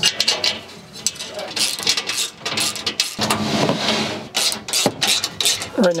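Clicks, clinks and rattles of metal bolts and anchor-point brackets being handled and threaded in loosely by hand on a metal cargo storage shelf, with a couple of longer rattling scrapes in the middle.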